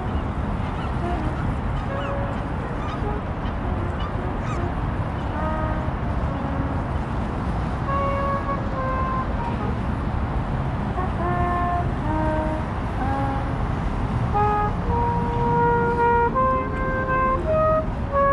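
Street busker's trumpet playing a slow melody of held notes, faint at first from about five seconds in and growing louder near the end, over a steady low rumble of city traffic.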